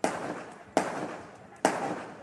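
Gunshots from a drive-by shooting: three sharp reports a little under a second apart, each trailing off in a long echo.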